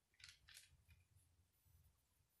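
Near silence with two faint, brief paper rustles about a quarter and half a second in: thin Bible pages being turned.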